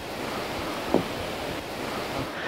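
Steady outdoor wind noise mixed with the wash of sea surf, with one brief faint sound about a second in.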